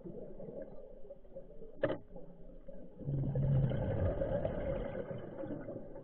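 Underwater scuba breathing: a short click about two seconds in, then the bubbling rush of a diver's exhale through the regulator from about three seconds in, over a steady low underwater hum.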